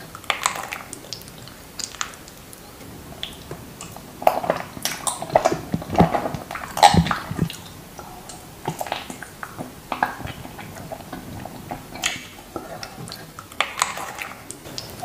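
Close-miked mouth sounds of raw honeycomb being bitten and chewed: irregular wet clicks and sticky crackles, busiest and loudest around the middle.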